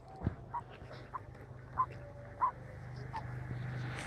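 Short animal calls, about five, spaced roughly half a second to a second apart, over a steady low hum, with a low knock near the start.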